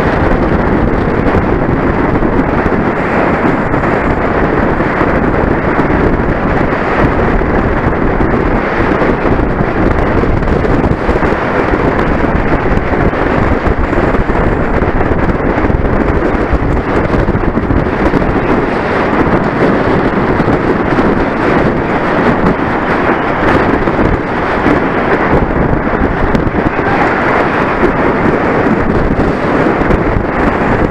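Loud, steady wind buffeting the microphone of a bicycle-mounted camera as the bike rides at race speed, a rumbling rush of noise.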